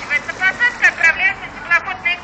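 A voice speaking in the street, sounding thin with little low end, over light traffic.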